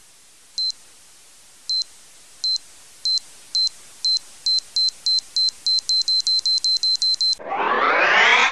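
Electronic beeping sound effect: short high-pitched beeps that start about a second apart and speed up into a rapid run of about twenty, then stop. A rising whoosh swells up near the end, building toward a blast-off.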